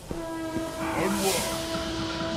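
Steam locomotive whistle blowing one long, steady note from about a tenth of a second in, with a burst of hiss about a second in.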